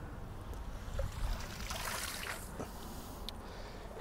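Water trickling and dripping off a wet cast net and its rope as they are hauled up out of the water hand over hand, with a low steady rumble underneath and a few small ticks.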